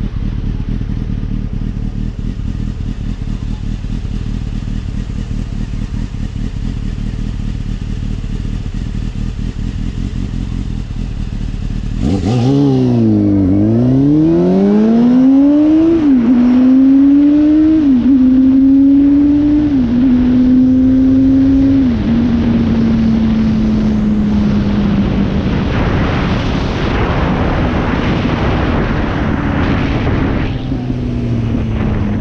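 Motorcycle engine idling steadily, then pulling away about twelve seconds in. It accelerates through the gears with several upshifts, the pitch climbing and dropping at each change, and settles into a steady cruise with wind noise on the helmet-mounted microphone.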